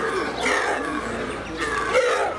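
Sika deer giving two loud cries, each falling in pitch, about half a second in and near the end: the contact call that hinds use to find their fawns in the herd.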